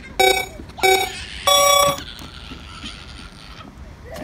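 Electronic beeps in a countdown pattern: two short beeps at one pitch about half a second apart, then a longer, higher beep about a second and a half in, like a start signal. A faint hiss follows it.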